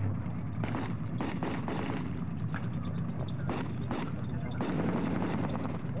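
Steady low engine rumble of a military vehicle, with a string of irregular gunfire shots and bangs over it.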